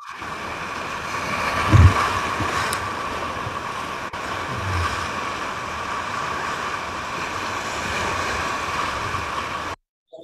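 Whitewater of a river rapid rushing and churning around a tule reed raft, heard close up with wind buffeting the microphone. A heavy low thump comes about two seconds in and a smaller one near five seconds, and the sound cuts off just before the end.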